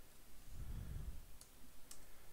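Computer keyboard keys clicking as code is typed: a few sparse keystrokes, with two sharp clicks in the second half and soft low thumps before them.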